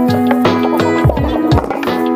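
Background music with a steady beat: held notes over a low drum hitting about twice a second.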